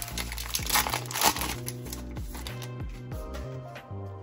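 Foil trading-card pack wrapper crinkling as it is pulled off the cards, loudest in the first half, over background music with a steady bass beat.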